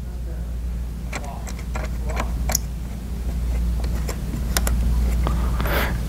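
Scattered light clicks and knocks of a featherboard and a wooden test piece being positioned against a router table fence, over a steady low hum.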